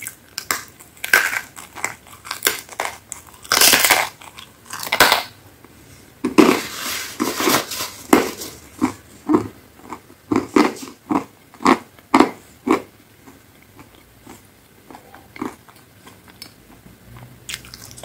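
Close-miked biting and chewing of a crisp pizza crust: loud, dense crunching in the first half, settling into steady chewing at about two strokes a second that grows faint near the end.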